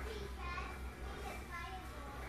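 Faint voices talking in the background, two short stretches of speech, over a steady low hum.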